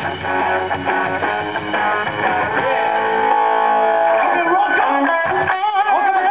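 Live rock band playing: electric guitars strum held chords over the band. A wavering melodic line comes in near the end.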